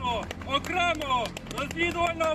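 Speech only: a man's voice addressing the camera, with no other sound standing out.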